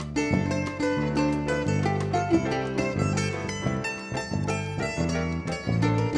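Instrumental band playing: an acoustic guitar picking a quick melody over electric bass, keyboard and drum kit.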